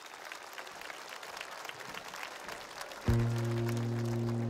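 Audience applause, slowly growing louder. About three seconds in, the live band comes in with a loud, held low chord that drowns it out.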